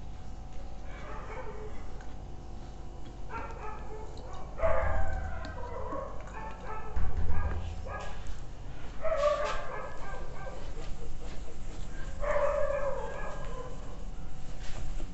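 An animal's short pitched cries, rising and falling, in five or six separate bouts a second or two apart. Two low thumps stand out as the loudest sounds, about five and seven seconds in.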